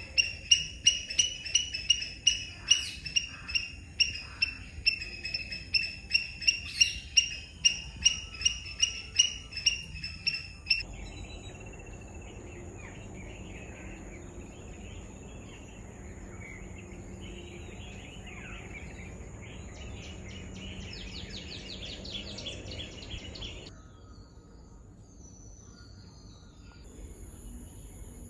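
A bird repeating a short, sharp, high call about two or three times a second for roughly ten seconds. The call stops suddenly and gives way to a steady high-pitched whine with faint scattered bird chirps, which also cuts off near the end.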